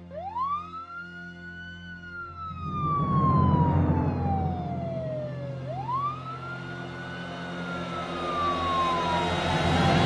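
An emergency vehicle siren wailing, its pitch rising quickly and then falling slowly, twice, over low background music.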